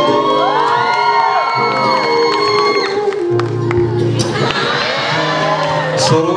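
An audience cheering and whooping over background music with held notes. The whoops and shouts come thickest in the first half and again shortly before the end.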